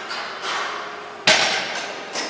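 Heavily loaded barbell with bumper plates set down on a wooden lifting platform at the end of a deadlift rep: one sharp impact a little past halfway, with a brief ring after it.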